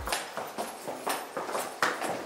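Footsteps going down hard stairs in a stairwell: a run of sharp knocks, about two a second, the loudest near the end.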